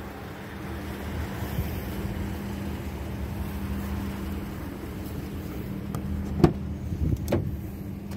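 Two sharp clicks near the end as a car's rear passenger door is unlatched and swung open, over a steady low hum.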